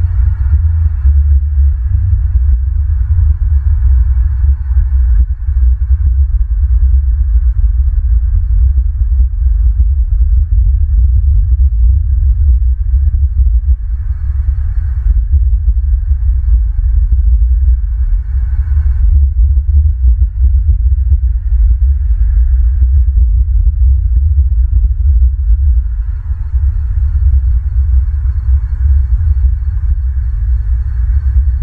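Loud, steady low rumble that flutters throughout, with a faint hum above it.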